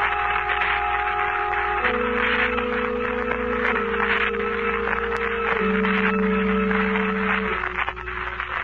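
Organ bridge music: sustained chords held about two seconds each, stepping down a little lower with each change. A steady hiss from the old recording runs underneath.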